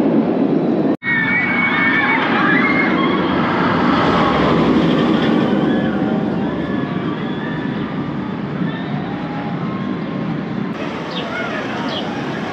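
Outdoor amusement-park ambience: a steady rush of background noise with scattered distant voices. There is a sudden brief break about a second in, and the sound eases slightly in the second half.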